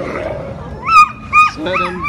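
A dog yapping three times in short, high yelps.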